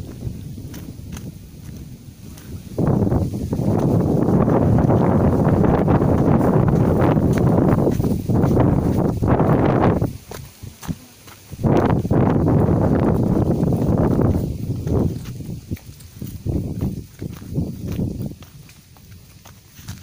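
Footsteps crunching and scuffing on a dry, leaf-littered dirt trail going downhill, close to the microphone. Two loud stretches, about seven seconds and then about three, with a short lull between, then quieter steps.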